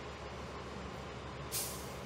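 A diesel transit bus idling with a steady low hum, and a short, sharp blast of air-brake hiss about one and a half seconds in.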